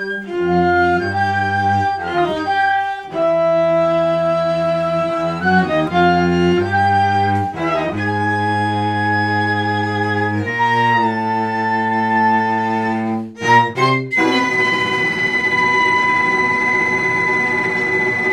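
Chamber music for flute, clarinet, viola and cello: slow sustained chords shifting every second or two over a low cello line. About fourteen seconds in, after a few short notes, a high held note enters over a denser, shimmering texture.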